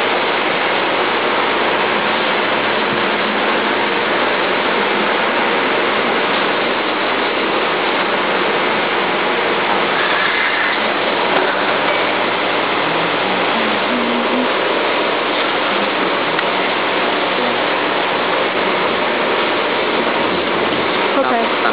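A steady, loud hiss with no rhythm or pitch, unchanging throughout.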